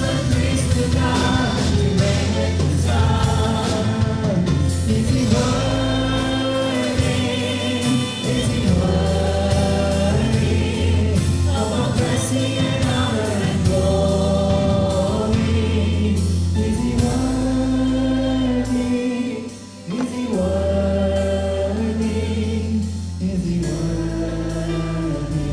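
Live Christian worship music: a congregation singing along with a worship band, held sung lines over bass and a steady beat. The music dips briefly a little over four seconds before the end, then picks up again.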